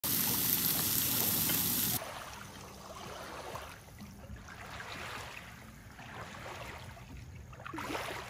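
A loud, steady hiss for the first two seconds, which cuts off suddenly. Then small lake waves lap on a sandy shore, washing in and out in gentle swells about every second and a half.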